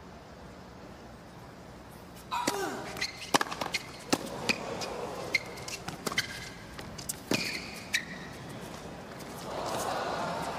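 Tennis rally on a hard court: sharp racket strikes and ball bounces in quick, irregular succession, starting about two seconds in. Near the end the crowd groans.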